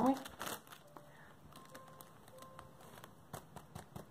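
A paper coffee filter crinkling as it is handled and folded to pour excess microfine glitter back into its jar. The crinkling comes in short bursts, about half a second in and again near the end.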